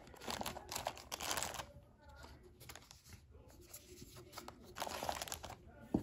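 Zip-lock plastic bag crinkling as it is handled, in a burst over the first second and a half and again briefly near the end, quieter in between.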